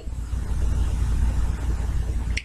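Steady low rumble under an even hiss, with no distinct events: continuous background noise.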